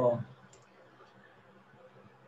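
A man's voice trailing off on a short "oh", then near silence: faint steady hiss on the headset microphone.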